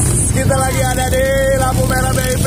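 A man's drawn-out voice over a steady rumble of street traffic and wind noise on a moving handheld camera's microphone.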